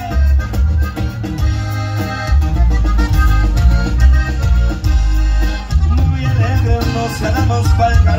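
A live Mexican regional band with accordion, guitars, bass and drums playing a song with a strong, steady bass beat.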